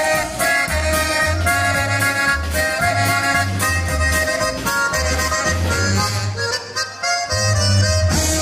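Live polka music: an accordion melody over a steady bass beat about twice a second, with snare drum and cymbal hits. The bass drops out briefly near the end.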